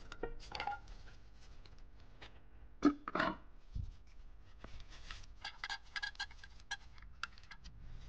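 Metal clicks, clinks and scrapes of connecting rods and crankshaft parts being handled by a gloved hand inside the opened bottom end of a hydrolocked engine. A sharp knock comes about three seconds in, then a scrape and a dull thud, and a run of quick clicks in the second half.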